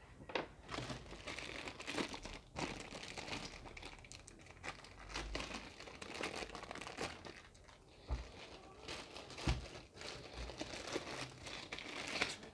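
Thin clear plastic bag crinkling continuously as it is handled with a digital multimeter sealed inside, with a couple of dull knocks in the second half.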